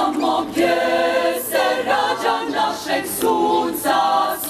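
Women's choir singing a cappella in held, sustained notes, phrase after phrase, with short hissing consonants between phrases.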